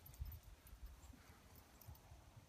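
Near silence, with faint, irregular low thuds.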